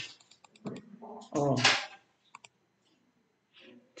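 Quick, light computer clicks as the on-screen document is zoomed in: a cluster near the start and two more about two and a half seconds in, with a short spoken "uh" between them.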